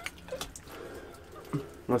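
Quiet, with a few faint clicks and taps scattered through; a man starts speaking near the end.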